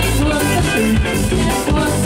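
Live band playing a rock song on stage, with drum kit and guitar over a continuous, steady-level mix.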